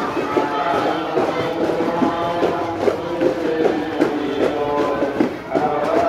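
Melodic singing of a devotional song that runs on without a break, over the talk of a walking crowd.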